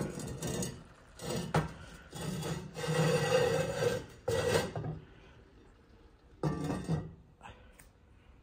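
The heavy lid of an enamelled cast-iron Dutch oven is lowered onto the pot and shifted into place, scraping and rubbing on the rim, with a sharp knock about one and a half seconds in. The loudest scraping comes a little past the middle, then it goes mostly quiet.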